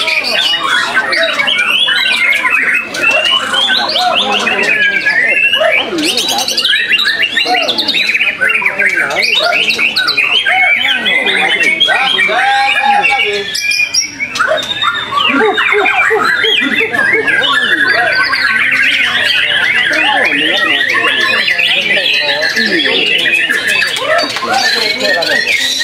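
White-rumped shama (murai batu) singing in a cage: a dense, unbroken stream of rapid, varied whistles and chirps, overlapped by other songbirds competing at a contest ground.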